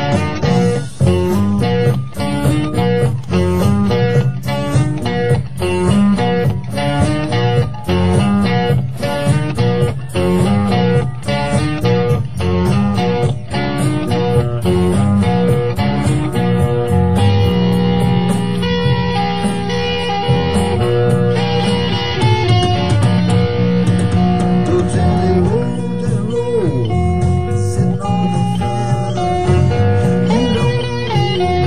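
Live electric blues-rock band with guitar in front, starting a blues number. For the first half the band hits hard together about twice a second, then it settles into longer held guitar notes and chords.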